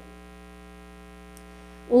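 Steady electrical mains hum: a constant low tone with a stack of even overtones, unchanging throughout.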